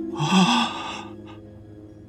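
A man's short startled gasp, a breathy intake with a brief voiced catch, lasting about a second near the start, over soft background music.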